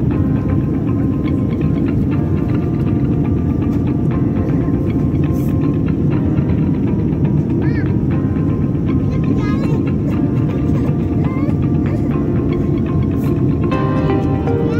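Steady, even roar of an airliner cabin in flight, with background music laid over it.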